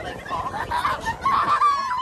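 Girls squealing and shrieking with laughter as the boat pitches over rough waves, ending in one long, held high squeal.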